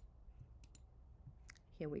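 A few faint, spaced-out computer mouse clicks over a low background hum. A voice starts speaking near the end.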